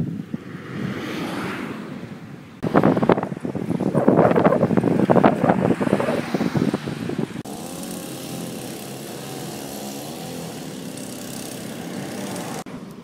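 Road traffic with vehicle engines running, in several pieces that change abruptly. The loudest piece, in the middle, holds rough knocks and buffeting.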